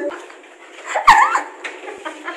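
A person's voice: a short, high-pitched squeal about a second in, its pitch dipping and rising, over a low thump.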